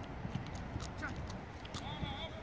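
Footballs being kicked and passed on an artificial pitch: a scattering of short, soft knocks over a steady low background, with distant players' voices.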